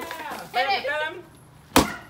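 A piñata being struck in a swing: one sharp, loud whack near the end, with shouting voices before it.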